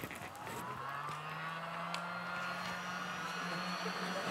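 A backpack vacuum cleaner's electric motor switched on: a whine that rises in pitch as it spins up over the first second, then runs steadily with a low hum.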